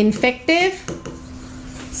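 Pen strokes tapping and scraping on a writing board as a word is written, with a drawn-out syllable of a woman's voice in the first second.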